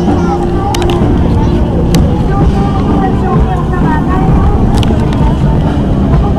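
A steady low rumble, the distant drone of a C-130H Hercules's four turboprop engines on approach to land, with a crowd's voices over it and a few short clicks.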